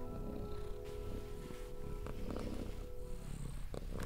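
A cat purring under soft ambient music of long held notes.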